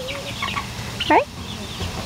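Hens clucking, a few short calls.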